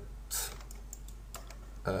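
A few light clicks from a computer keyboard and mouse, with a short hiss a moment in, over a low steady hum. A voice begins with an 'uh' at the very end.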